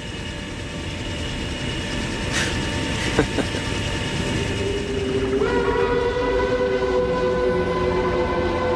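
Helicopter running, heard as a steady noise inside its cabin. About five and a half seconds in, a held, horn-like chord of several steady tones starts over it.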